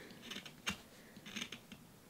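A craft knife shaving wood from a white coloured pencil by hand: a few faint scrapes and clicks, the sharpest about two-thirds of a second in.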